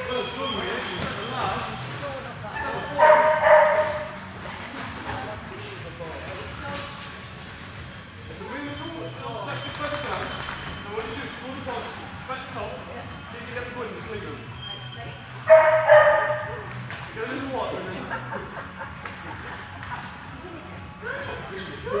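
A dog barking and yipping in two loud, high-pitched outbursts, one about three seconds in and one about fifteen seconds in, with quieter voices between them.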